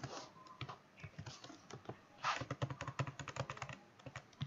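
Typing on a computer keyboard: a run of quick key clicks, sparse at first and coming in a dense burst about halfway through.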